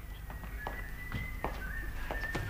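Scattered light knocks and clicks over a low hum, with a faint thin high tone held under them.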